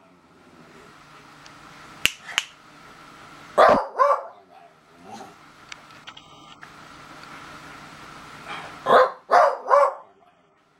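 Beagle barking: a loud pair of barks about three and a half seconds in, a weaker one a second later, then three barks in quick succession near the end. Two sharp clicks come just after two seconds.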